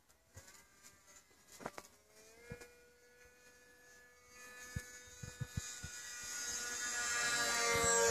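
Motor of a radio-controlled model airplane in flight, a steady buzzing whine that is faint at first and grows steadily louder over the second half as the plane comes in and passes overhead.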